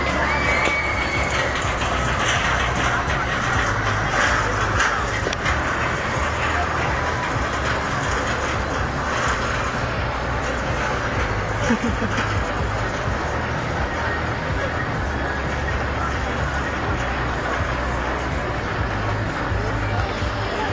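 Amusement park ambience: crowd chatter and background music over a steady low rumble.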